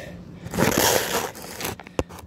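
Handling noise on a phone's microphone: a loud scraping rustle for just under a second as the phone lying on the concrete is touched and moved, then a sharp click near the end.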